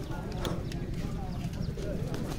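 Faint voices of several people talking in the background, over a steady low rumble, with a few short clicks or knocks.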